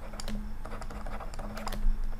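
Light, irregular clicks and taps of a stylus on a tablet's writing surface as words are handwritten, with one louder tap near the end, over a steady low hum.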